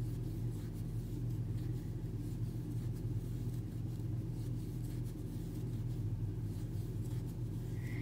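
A steady low electrical hum, with faint soft ticks and rustles from a crochet hook working worsted acrylic yarn.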